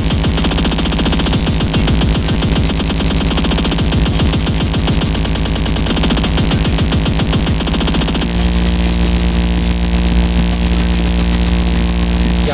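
Speedcore track: a very fast, dense stream of distorted kick drums with electronic tones over it. About eight seconds in the kicks stop, leaving a held distorted bass tone.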